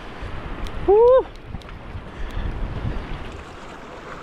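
Sea water washing against concrete tetrapods, with wind buffeting the microphone and a few faint clicks. About a second in, a short voiced exclamation, rising then falling in pitch, is the loudest sound.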